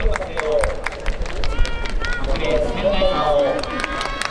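A voice over the stadium public-address system introducing the relay runners lane by lane, with scattered sharp claps from the stands.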